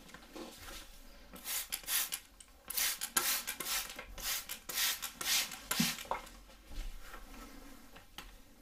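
Close-miked hair on a mannequin head being worked with a hairdressing tool: a run of irregular, scratchy strokes from about a second and a half in until about six seconds, with quieter handling around them.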